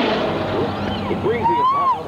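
Engine and road noise inside a moving car, with speech over it from about halfway through: a voice saying "oh" over a radio weather forecast.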